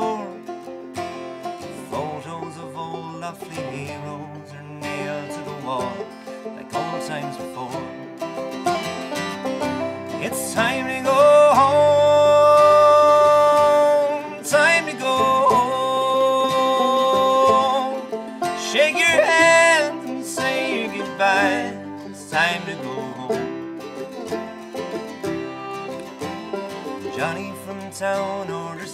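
Irish bluegrass band playing an instrumental break on acoustic guitar, banjo, mandolin and fiddle, with no singing. Long held notes sound through the middle of the passage.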